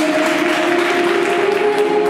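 Figure skating program music with long held notes, played over the rink's sound system, mixed with audience applause after a landed jump.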